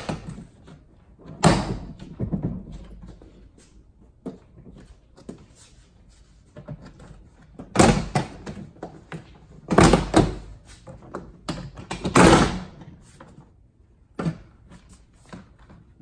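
Plastic trim clips of a Toyota Highlander's liftgate interior panel popping loose as the panel is pulled off by hand: several sharp snaps and clunks at irregular spacing, with a few softer knocks between.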